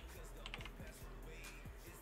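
Faint typing on a computer keyboard, a few soft key clicks, over quiet background music.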